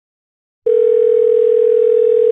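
Telephone ringback tone, the caller's line ringing: one steady, even tone starts just over half a second in and holds on, followed by a pause before the next ring.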